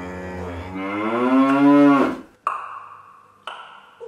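A long, loud cattle moo that rises and then falls in pitch and ends about two seconds in. It is followed by two short struck notes that ring out.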